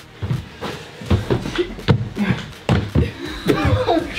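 Burpees on a rug: a run of short thumps from feet and hands hitting the floor, with brief laughs and breaths between them.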